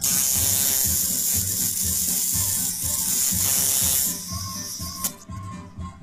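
Tattoo machine buzzing loudly close to the microphone for about four seconds, then stopping.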